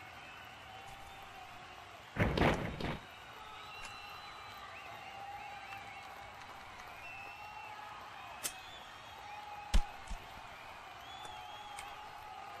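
Wrestling-game impact sound effect: a single loud slam of a body taken down to the mat, about ten seconds in, with a smaller click a second or so before it.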